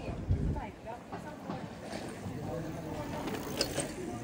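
Indistinct voices of passers-by talking, with a low thump about a third of a second in and a sharp click near the end.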